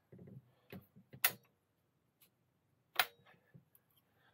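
Wrench working on bolts in the crankcase of an engine being reassembled, the bolts tightened a little at a time in turn: a few sharp metallic clicks of tool on metal, the loudest about a second in and another near the end.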